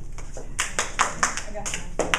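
A run of about six sharp taps or knocks at uneven spacing, starting about half a second in.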